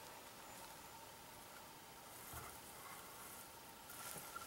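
Near silence: faint outdoor ambience, with one soft low thump a little past halfway.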